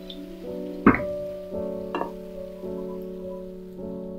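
Soft background piano music, slow chords changing about once a second. Two sharp knocks of a spatula against the frying pan, the louder about a second in and a lighter one about two seconds in.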